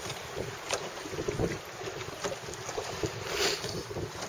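Wind buffeting the microphone over choppy water lapping against a small boat, with scattered light clicks and knocks and a brief louder rush near the end.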